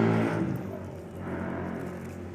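A motor vehicle engine humming steadily, loud at first and fading over about the first second, then carrying on more quietly.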